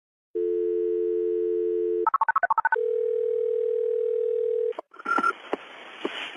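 Telephone dial tone, then a quick run of touch-tone dialing beeps about two seconds in. A steady ringback tone follows for about two seconds, then the line picks up with a click as a 911 call connects.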